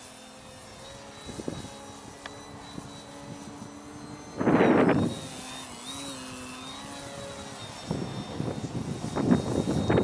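Electric foam aerobatic RC plane's motor and propeller whining, the pitch shifting up and down with the throttle. A loud rush of noise about four and a half seconds in, and gusty rushing again near the end.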